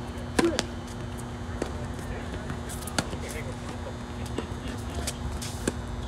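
Tennis rally: a loud racket strike on the serve about half a second in, then further sharp racket-on-ball hits and ball bounces every second or so, over a steady low hum.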